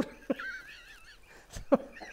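A person laughing in high-pitched, wavering squeals, with a short breathy burst of laughter and a click near the end.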